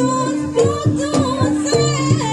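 Javanese jaranan gamelan music: pitched gongs repeat a short cyclic pattern, with sharp drum strokes and a high, wavering melody line over them.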